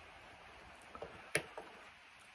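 A few small clicks and taps from handling a tobacco pipe, the loudest a sharp tick a little past the middle, over a faint steady hiss.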